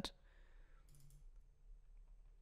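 Near silence: faint room tone with a couple of faint computer mouse clicks.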